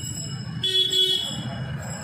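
A distant vehicle horn gives one short toot, about half a second long, over a steady background hum.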